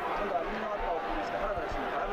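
A man's voice speaking quietly: commentary from the old boxing broadcast playing under the footage.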